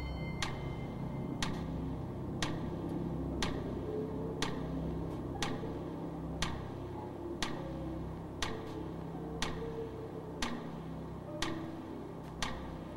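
Game-show countdown clock ticking once a second, about twelve ticks, over a low sustained music bed, timing the contestant's 30-second answer period.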